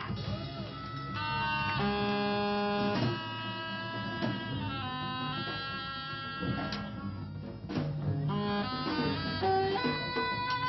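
A live rock band playing on drum kit and electric guitars. Long held notes step to a new pitch every second or so, with a few cymbal hits.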